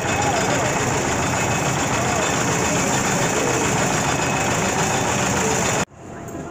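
Loud, steady din of a busy fairground: indistinct voices over a continuous mechanical hum. It starts and cuts off abruptly.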